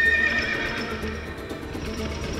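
A horse whinnies once at the start, a short call that fades within about a second, with hoofbeats of horses on the move, over background music.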